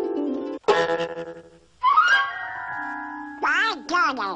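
Harp strings plucked in a scale, cut off suddenly about half a second in. A loud chord of cartoon music then rings and fades, followed by a rising swoop into held notes. Near the end comes Donald Duck's quacking cartoon voice.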